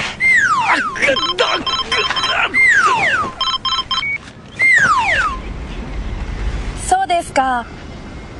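Comic soundtrack effects: three descending whistle-like swoops, each falling in pitch over about half a second, with rapid electronic beeping between them. A short vocal exclamation follows near the end.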